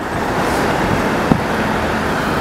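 Steady rush of motorway traffic and road noise heard from inside a car crawling in a traffic jam.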